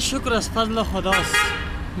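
Men talking, with a short car horn toot about a second in.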